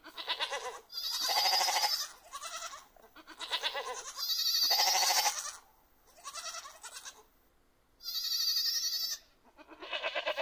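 Goats bleating again and again, in long wavering bleats of about a second each with shorter ones in between.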